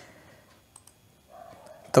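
A few faint computer mouse clicks, two in quick succession about three-quarters of a second in, as the presenter works the slides.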